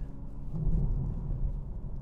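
BMW M240i xDrive on the move: a low rumble of engine and road noise, with the engine note swelling slightly about half a second in.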